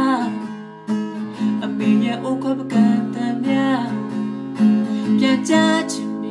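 A man singing while strumming an acoustic guitar, his voice carried over the guitar chords, with a brief lull about a second in.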